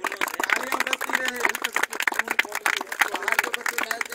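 A group of people clapping hands in quick, overlapping claps, with a person's voice going on underneath.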